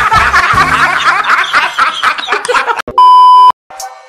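Several men laughing loudly over music with a bass line. Near the end this cuts to a loud steady beep lasting about half a second.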